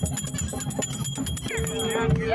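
Crowd voices and music, with a small hand bell ringing rapidly and continuously over them; a steady held note joins in about one and a half seconds in.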